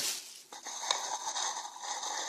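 Thin plastic grocery bag being picked up and handled, rustling, with a couple of small clicks.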